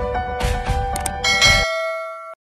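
Intro music with a regular drum beat. The beat stops about one and a half seconds in, and a bright bell chime rings on alone: the notification-bell sound effect of a subscribe-button animation.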